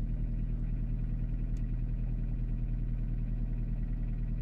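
VW Lupo engine idling steadily, heard from inside the cabin, with a slight clatter. It has just been started after standing unused for over a year.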